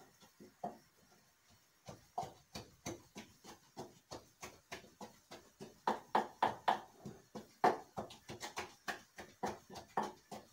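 A pestle pounding in a wooden mortar: a steady run of hollow wooden knocks, about three or four a second. The knocks stop briefly about one to two seconds in and are loudest in the middle.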